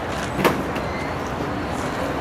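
Steady outdoor city background noise, like distant traffic, with one sharp knock about half a second in.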